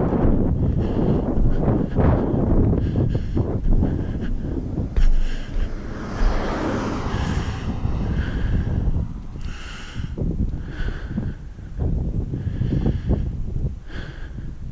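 Wind buffeting a camera's microphone, with a vehicle passing on the road about halfway through.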